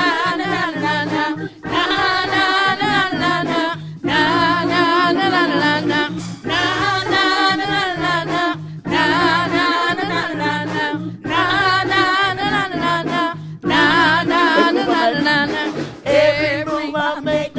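Children and congregation singing a worship song together in phrases of about two seconds with short breaths between them, the voices wavering with vibrato over steady low tones.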